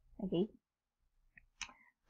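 A woman's short spoken syllable, then a pause broken by a couple of faint sharp clicks near the end.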